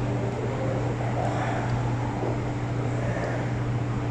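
A steady low machine hum, even throughout, with no clear changes.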